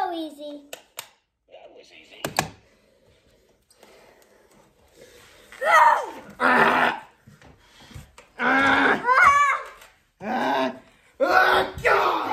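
Children's voices shouting and exclaiming in loud bursts during rough play, with a few sharp knocks in the first couple of seconds.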